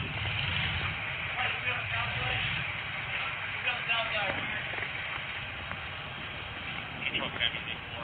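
Steady rumble of street traffic from the road below, picked up by a body-worn camera, with faint voices now and then.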